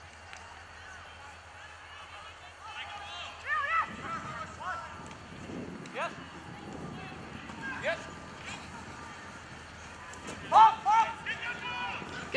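Scattered short shouts from people on a rugby pitch during open play, the loudest near the end.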